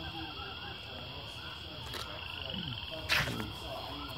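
Outdoor animal chorus: a steady high buzz under rows of short repeated calls, with one sharp click about three seconds in.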